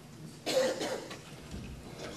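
A single cough about half a second in, fading quickly.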